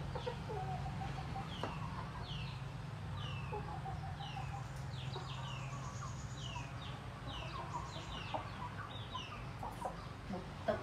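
Chicks peeping over and over, short falling cheeps about two a second, over a steady low hum.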